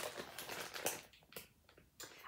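Clear plastic bag of wax melts crinkling and rustling as it is handled, for about the first second, then a single faint click.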